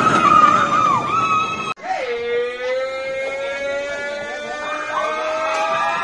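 Family roller coaster train running past on its track with riders screaming. After a brief break about two seconds in, one long held tone slowly rises in pitch.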